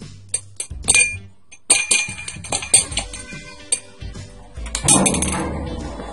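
Metal teaspoon clinking against a plastic container and a drinking glass while half a teaspoon of baking soda is measured out: a string of sharp clinks, then a short scraping rush about five seconds in. Faint background music underneath.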